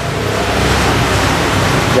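A loud, steady rushing noise, like air blowing across the microphone, building up over the first half-second and then holding.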